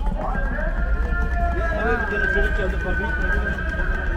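Busy city pavement ambience: crowd voices over a steady low traffic rumble, with music coming in a moment after the start as a held high note with overtones that carries on.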